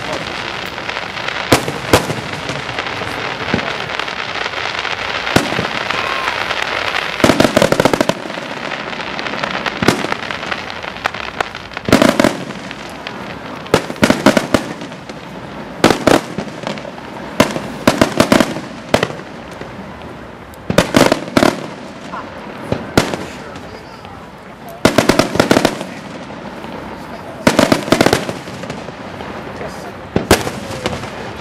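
Aerial firework shells bursting in a display, with sharp reports coming singly or in quick clusters every second or two. Between about 2 and 8 s there is a denser spell of crackling.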